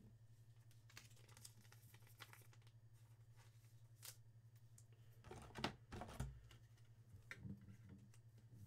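Near silence: faint rustles and soft clicks of a trading card and a clear plastic card holder being handled, strongest about five to six seconds in, over a low steady hum.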